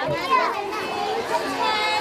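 Children's and adults' voices chattering together, a steady hubbub of several people talking at once as children play and come out to their families.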